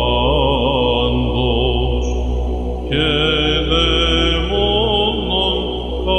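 Solo male Byzantine chant: a protopsaltis sings a melismatic, richly ornamented line of a doxastikon over a steady ison drone from an electronic isokratima. About three seconds in he pauses briefly and starts a new phrase.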